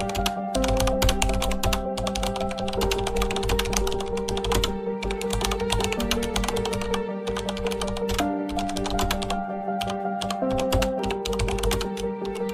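Keyboard-typing sound effect: rapid clicks in runs with short pauses, over soft background music with held notes.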